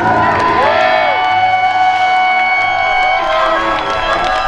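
Live rock band sounding its closing notes, with sustained and bending tones, while an audience cheers and whoops.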